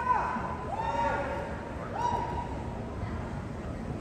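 People shouting long, high-pitched cheers in a gym. One drawn-out yell ends just after the start, then two more follow about a second apart.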